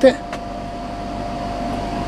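Portable air conditioner running: a steady fan whir with a constant whine held at one pitch.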